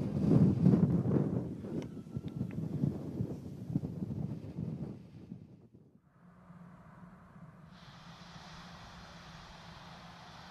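Wind buffeting an outdoor microphone, a gusty low rumble that fades out about five seconds in. A quieter, steady hiss with a low hum follows and grows brighter about eight seconds in.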